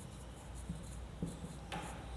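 Marker pen writing on a whiteboard: faint short strokes and taps, with one louder stroke near the end.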